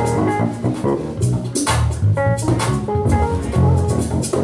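A live gospel band jamming: electric bass lines carry the low end, with keyboard chords and notes from a Yamaha Motif synthesizer and a drum kit keeping time on the cymbals.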